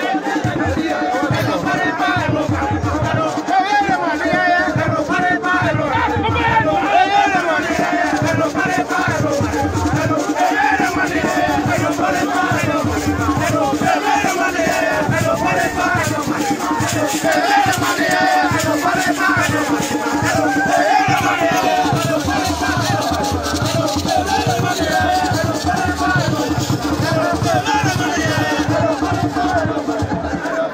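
Live masquerade music: a crowd of voices singing and chanting together over a steady run of drum beats, with a held drone-like tone underneath.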